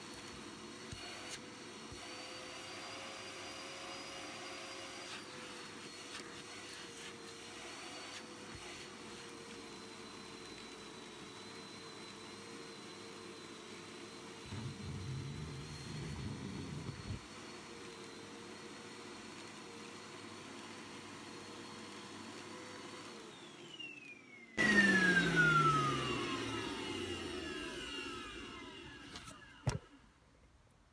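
Morphy Richards Perform Air Pets Cyclonic bagless cylinder vacuum running with a steady motor whine and strong suction, now that its hose is cleared of a blockage. For a couple of seconds about halfway it grows louder with a low rush as it sucks things up off the floor. Near the end it is switched off and the motor winds down in a falling whine.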